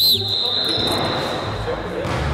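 A pea whistle blown once: a sharp high blast that carries on more softly for about a second, with a second short chirp just after. It signals the players to start a push-up drill.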